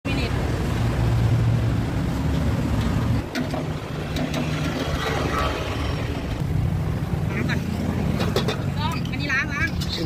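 A steady low motor rumble, like an engine running nearby, with voices talking over it in the last couple of seconds.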